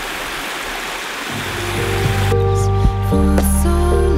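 A small forest creek rushing over rocks. Background music with sustained notes fades in over it, and about halfway through the creek sound cuts out, leaving the music.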